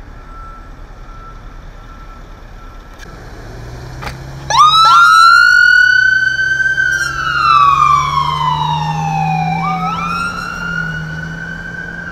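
Ambulance siren switched on about four and a half seconds in: it sweeps up quickly, holds, falls slowly for several seconds and rises again near the end in a slow wail, over the low hum of the ambulance's engine as it drives off.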